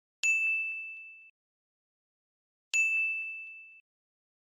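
Two identical bright, single-note dings, about two and a half seconds apart. Each strikes sharply and rings away over about a second. They are a ding sound effect added in editing over silence.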